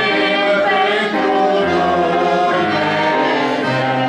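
A woman and a man singing a hymn together in slow, sustained notes, accompanied by an accordion.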